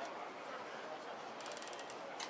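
Outdoor ambience of a busy market crowd: a steady, fairly quiet background murmur. Near the end comes a short burst of rapid high-pitched ticking, lasting about half a second.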